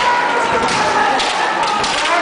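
Kendo fighters' long, sustained kiai shouts, with several sharp cracks of bamboo shinai strikes and stamps on the wooden floor.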